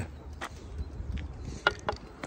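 Wind rumbling on a phone microphone outdoors, with a few light clicks as the camera is swung round, the sharpest about one and a half seconds in.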